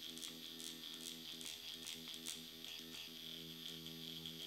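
Dr. Pen X5 electric microneedling pen running at a fast speed setting against the upper lip: a faint, steady buzz with faint irregular clicks.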